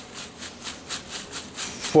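Folded paper slips rustling and tumbling inside a hat as it is shaken, a quick even rhythm of about five shakes a second.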